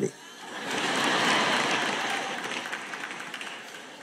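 Audience applauding: the clapping swells about half a second in, peaks soon after and slowly dies away.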